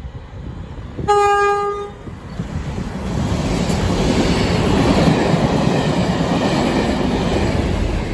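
A diesel locomotive of a test train sounds its horn once, one short note about a second in. The train then runs through at speed, the rumble of the wheels on the rails and of the coaches going by building from about three seconds in and staying loud.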